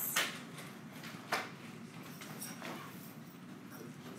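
Stylus tapping and sliding on an iPad's glass screen during handwriting: a few faint taps, about a second apart, over low room noise.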